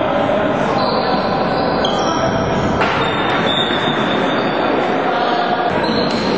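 Floorball game in a sports hall: a steady, echoing din of players' and spectators' voices, with scattered short high squeaks and a sharp knock near the middle.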